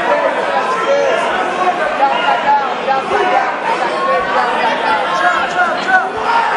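Fight crowd's many overlapping voices, talking and shouting over one another in a steady din.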